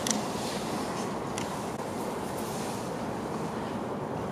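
Steady background noise of a large indoor sports hall, with a few faint taps about a second in and again later.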